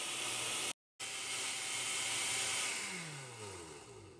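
Oster countertop blender motor running steadily as it purées a tomato and chile sauce, with a brief silent gap about a second in. Near the end it is switched off and spins down, the whine falling in pitch as it slows.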